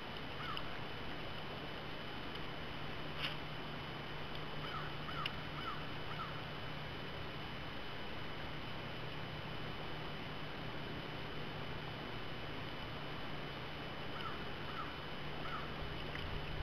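Steady low hum under an even hiss aboard a fishing boat on the lake, with a few small groups of short chirps and a couple of faint clicks.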